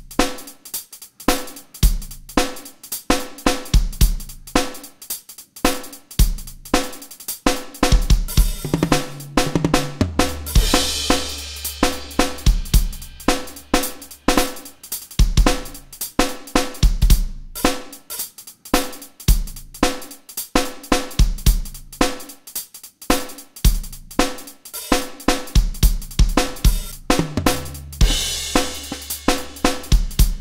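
Rock Drum Machine 2 iPad app playing a rock drum-kit pattern of kick, snare, hi-hat and cymbals at 110 BPM, with fills every two bars from its jam feature. A crash cymbal washes over the beat about ten seconds in and again near the end.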